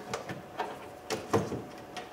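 Light plastic knocks and rustling from a pickup's door trim panel and its wiring being handled as the wires are fed down inside the door. There are four or so short knocks, the loudest about one and a half seconds in.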